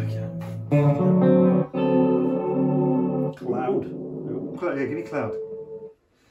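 Duesenberg Starplayer TV electric guitar playing sustained chords through an M-Vave Mini Universe reverb pedal, with a long reverb tail. A new chord is struck about a second in and rings for a couple of seconds, and the sound dies away just before the end.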